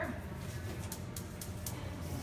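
Gas range burner's spark igniter clicking as the burner is lit: a run of four sharp, high ticks, about four a second, starting nearly a second in.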